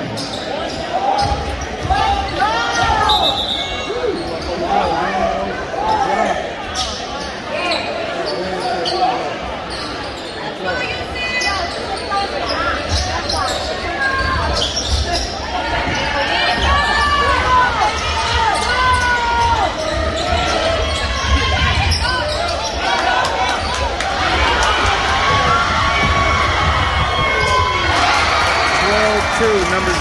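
A basketball bouncing on a hardwood gym court during play, the impacts repeating irregularly among the voices of players and spectators, all echoing in the large gym.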